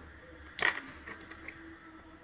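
One sharp click a little over half a second in, then two faint ticks: small hard toys being handled and put into a cardboard box.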